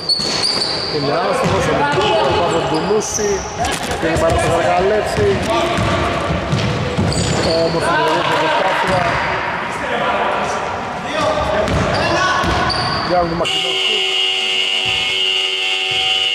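Basketball game on an indoor court: a ball bouncing, short high sneaker squeaks and voices echoing in a large hall. About 13 seconds in, the game buzzer sounds a steady tone and holds it to the end.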